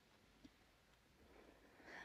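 Near silence: faint room tone with one soft click, then a faint breath building near the end.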